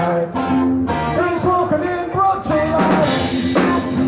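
Live rock band playing: electric guitars, bass and drums, with a crash of cymbals about three seconds in.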